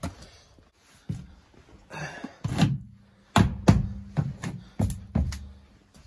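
Thuds and knocks of a camper's entry door and steps as someone climbs inside: a run of half a dozen knocks in the second half, with a low steady hum starting about halfway through.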